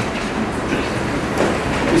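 Steady rumbling noise in a room, with a single knock about one and a half seconds in.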